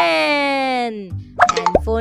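Cartoon sound effect: a tone sliding down in pitch for about a second, followed by a few short plops near the end as a low music beat starts.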